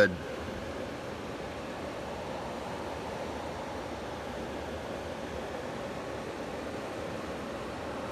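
Steady rushing of a river's running water, an even hiss with no breaks.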